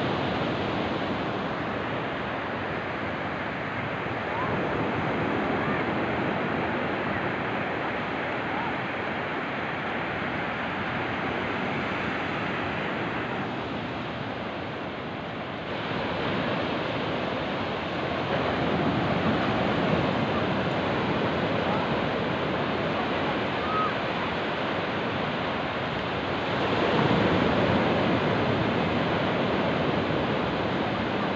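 Ocean surf breaking and washing up a sandy beach: a steady rush that swells louder a few times as waves come in.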